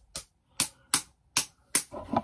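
A vinyl Funko Pop figure being handled on a desk: a run of five sharp plastic clicks or taps, evenly spaced at about two to three a second.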